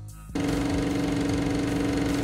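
A harsh electric buzz with static, used as a transition sound effect: a steady low hum under a fast, fine rattle, starting suddenly about a third of a second in.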